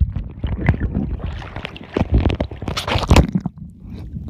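Muffled sea water sloshing and bubbling around a camera held just under the surface while snorkelling, with a low rumble and irregular knocks. A louder stretch of splashing runs through the middle and stops shortly before the end.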